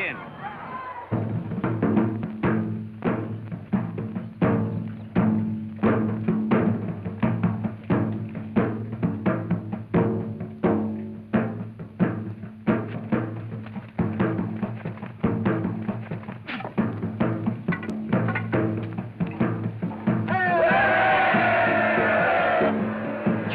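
Heavy, fast drumming in an uneven pounding rhythm over a low sustained note, starting about a second in and accompanying a fire-walk ordeal. Near the end a crowd's voices rise in cheering.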